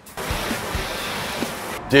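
A steady rushing noise, like a whoosh or static sound effect under an animated title card, that cuts off suddenly near the end.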